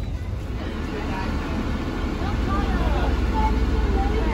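Steady low rumble of a tender boat's engine that slowly grows louder, with faint voices in the background.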